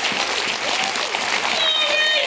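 Church congregation applauding, with voices over the clapping.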